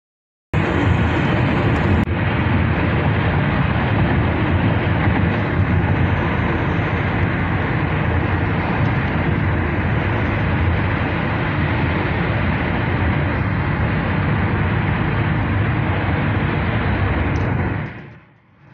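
Loud, steady rushing noise of a car driving at speed, heard from inside the cabin. It starts suddenly about half a second in and fades away at the very end.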